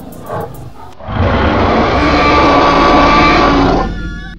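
A loud creature roar, a dinosaur roar sound effect. It starts about a second in, runs for nearly three seconds and then cuts off.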